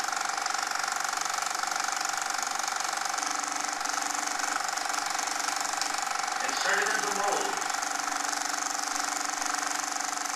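Steady mechanical hum with hiss, holding several fixed tones; a lower tone joins about three seconds in, and a brief voice-like sound comes about seven seconds in.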